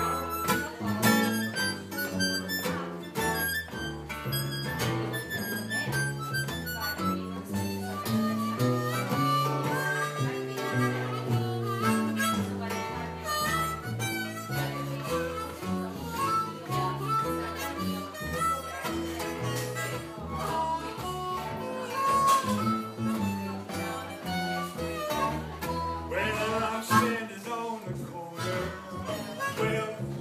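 Harmonica taking an instrumental solo in a blues tune, backed by strummed guitar with a steady beat.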